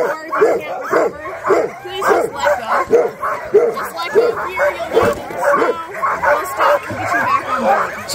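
Sled dogs barking and yipping over and over, about two calls a second.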